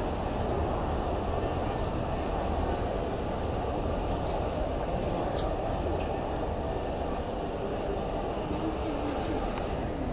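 Shopping-mall ambience: a steady low rumble of the building with a murmur of shoppers' voices and a few faint clicks.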